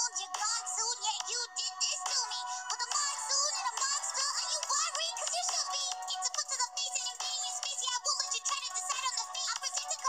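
Rap song playing: a female rapper's high-pitched verse delivered quickly over a beat. The sound is thin, with almost no bass.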